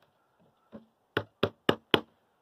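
A wooden box frame being knocked by hand: one faint knock, then four sharp knocks in quick succession, about four a second, in the second half.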